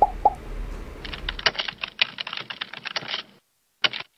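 Computer-keyboard typing sound effect: a fast run of key clicks for about two and a half seconds, then a pause and one last click near the end. Two short blips are heard just before the typing.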